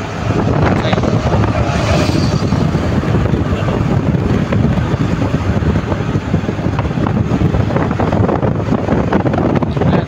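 Steady, loud rush of wind and tyre noise from a car travelling along a motorway, with a brief brighter hiss about two seconds in.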